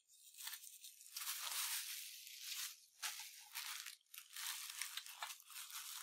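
Plastic bubble wrap crinkling and crackling as it is pulled off a metal miniature and crumpled in the hands, going on and off with short pauses about three and four seconds in.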